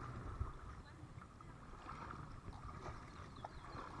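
Water splashing and rippling around a plastic kayak running through a shallow riffle, with paddle strokes and small scattered knocks.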